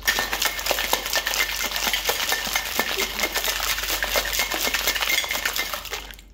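Ice cubes rattling hard inside a stainless-steel cocktail shaker being shaken vigorously, a fast continuous clatter that stops just before the end.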